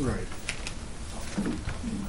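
Speech only: a man says "right", then quiet talk in a meeting room. Two faint clicks come about half a second in.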